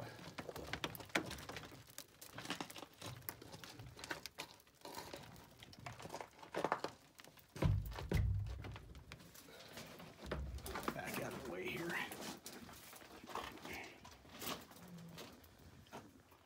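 A person scrambling up a timber-lined mine ore chute: boots scraping and knocking on rock and wooden cribbing, with small loose rocks rattling. One heavier thump comes about eight seconds in.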